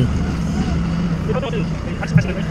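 Forklift engine running steadily as the loaded forklift drives forward, a constant low hum.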